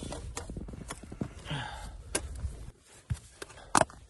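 Camping cook gear being handled and set out: scattered knocks and clicks, a brief rustle about a second and a half in, and a sharp clink near the end.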